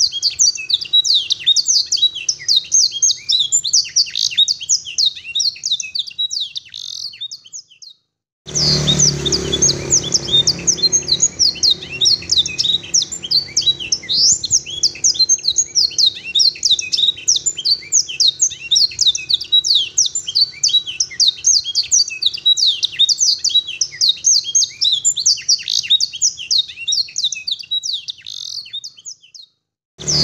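Caged domestic canary singing a long, fast, clear song of quick high sweeping notes and trills, a song filled in with learned blackthroat phrases. The song breaks off briefly about eight seconds in and again just before the end.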